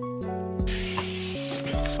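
Background music of held notes that change in steps. About two-thirds of a second in, a steady papery hiss starts, a craft knife slitting open a paper folder.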